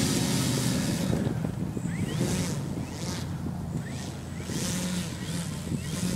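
Wind gusting across the microphone in uneven bursts of hiss over a low steady hum, with a few short rising chirps in the middle.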